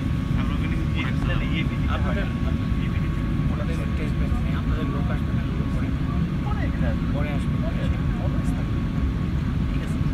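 Inside the cabin of an Airbus A380-800 taxiing after landing: a steady low rumble of the idling engines and rolling airframe, with a faint steady whine and passengers' voices murmuring over it.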